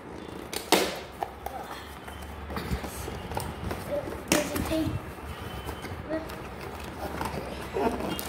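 A cardboard toy box being opened by hand: two sharp tearing pops, one just under a second in and one about halfway, with cardboard scraping and rustling between them.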